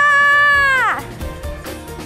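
A woman's long, high 'ahh' scream, held on one pitch, that falls away and stops about a second in. Background music plays under it and carries on after.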